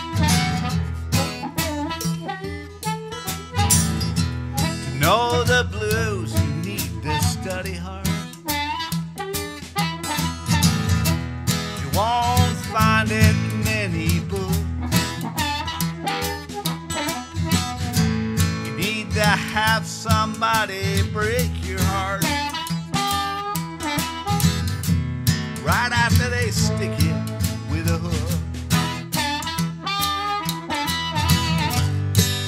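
Live acoustic blues: an acoustic guitar strummed steadily under a harmonica that plays bending, wailing phrases every few seconds.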